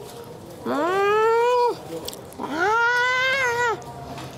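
A cat meowing: two long, drawn-out meows, each rising and then falling in pitch, the first starting just under a second in and the second about two and a half seconds in.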